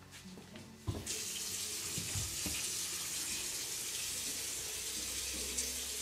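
A bathroom sink tap is turned on about a second in, and water runs steadily into the basin.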